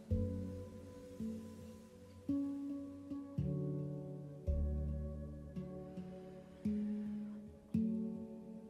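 Slow, calm background music on a plucked string instrument, like an acoustic guitar: a note or chord about once a second, each ringing and fading.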